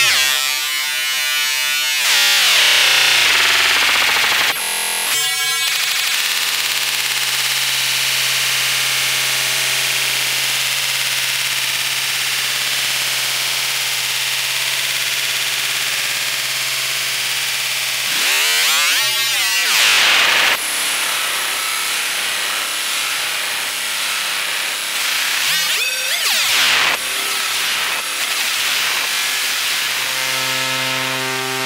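Xfer Serum software synthesizer playing a sawtooth wave through its Scream 1 BP (band-pass) filter, giving a hissy, distorted screaming tone. The filter is swept, making rising and falling sweeps near the start, about two-thirds of the way through and again near the end, with a steady low held note in between.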